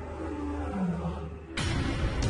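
A male lion roaring, a deep low call: the roar of a rival male approaching to challenge the pride's resident male. A sudden rush of noise starts about one and a half seconds in.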